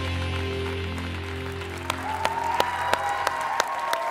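A rock song's closing guitar chord fading out, then a studio audience applauding from about two seconds in.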